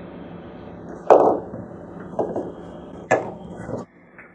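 Three short knocks of plastic gear being handled and set down on a desk, the loudest about a second in, over a steady hiss that cuts off near the end.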